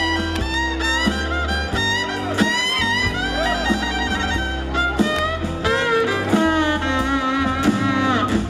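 Live band playing an instrumental passage: a fiddle carries a sliding, bowed melody over strummed acoustic guitar and a steady bass line.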